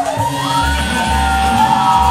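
Live psychedelic rock band playing loud: electric guitar, bass and drums, with long sustained high notes that bend slowly in pitch over a steady low bass pulse.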